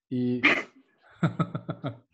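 A man laughing: a short voiced sound, then a run of quick, breathy 'ha-ha-ha' pulses, about five or six a second.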